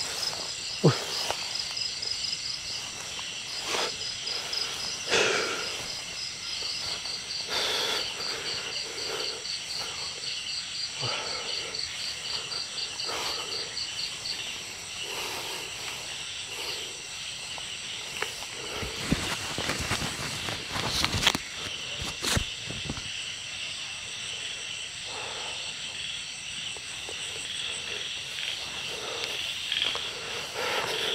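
Night insects, crickets among them, trilling steadily, with a fast pulsed chirp running through the first half. Footsteps and rustling through tall grass and brush break in now and then, with a louder cluster about twenty seconds in.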